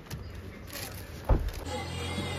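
A handheld cordless drill run in one short burst about a second in, a brief motor whirr and the loudest sound here.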